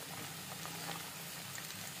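Bay leaves and spices frying in hot oil in an aluminium kadhai, a steady sizzle and bubbling as a steel spoon stirs them.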